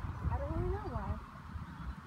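Wind rumbling on the microphone, with a gust right at the start. About half a second in comes one short voice-like sound that rises and then falls in pitch.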